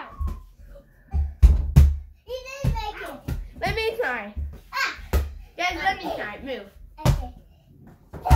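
A small rubber basketball bouncing on the floor: three quick thuds a little over a second in, then single thuds near five and seven seconds in.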